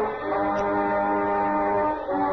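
Orchestral music led by brass, holding one sustained chord that comes in just after the start and ends near the end.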